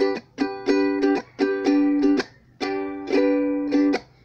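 Soprano ukulele strummed in a steady chord rhythm: down and up strokes, then the strings damped to a brief silence, then more downstrokes. The pattern is one down, one up, mute, two down.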